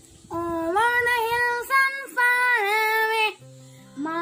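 A child singing long held notes with no clear words, in three phrases: a long note, a short one, then another long note that ends near the last second.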